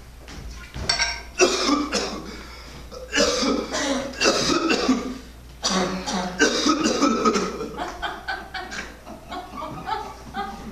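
A man coughing hard in three long fits, then more weakly, as if choking on a swallow of neat whiskey.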